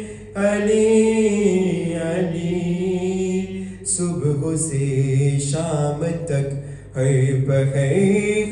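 A young man chanting a devotional qasida solo, unaccompanied, in long held melodic phrases with brief pauses for breath; about four seconds in, the melody drops to a lower pitch.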